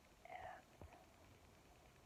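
A brief soft whispered vocal sound with a slight falling pitch, then a single faint click, over near-silent room tone.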